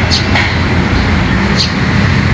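Steady low rumble of background noise, with two faint brushing sounds, one near the start and one about one and a half seconds in, as paper cutouts are slid across a table by hand.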